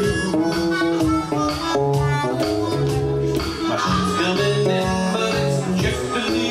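Live blues instrumental: a harmonica played cupped against a microphone, wailing held notes over a hollow-body electric guitar playing a walking bass-note figure.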